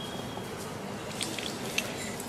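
Fizzy soda poured in a thin stream from a glass bottle into a glass of ice, with a few short sharp ticks in the second half.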